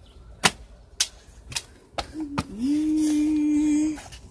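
A run of jumps on a brick path: about five sharp smacks roughly half a second apart, the first the loudest. Then a child's voice holds one steady 'aaah' for over a second near the end.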